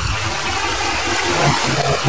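Steady rushing of flowing water, an even hiss at a constant level.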